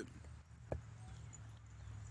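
Faint outdoor background with a steady low rumble and a single sharp click about three-quarters of a second in.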